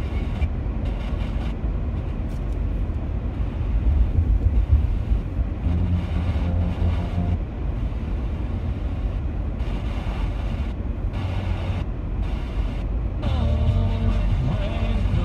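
Car driving at road speed, heard from inside the cabin: a steady low rumble of engine and tyres on pavement.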